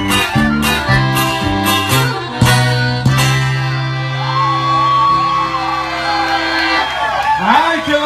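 Live band with accordion and guitar playing the closing bars of a song and ending on one long held chord, with a voice coming in near the end.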